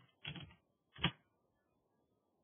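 Computer keyboard typing: a short run of key clicks, then a single sharper keystroke about a second in as the command is entered.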